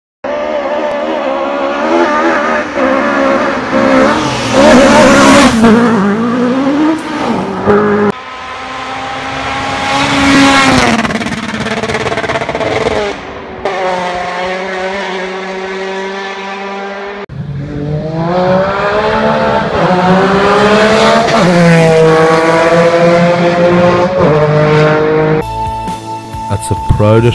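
Rally car engines running hard in a string of spliced clips, the revs climbing and dropping again and again through gear changes, with abrupt cuts from one car to the next.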